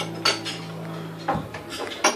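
Acoustic guitar's last chord ringing steadily, then stopping abruptly about a second and a half in. Glasses and crockery clink several times around it.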